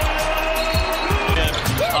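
A basketball bouncing in low, irregular thumps on the hardwood court, over music.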